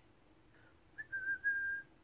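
A person whistling one short note about a second in, wavering briefly and then held steady for under a second.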